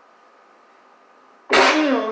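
A man sneezes once, loudly, near the end: a sudden burst whose voice falls in pitch as it fades.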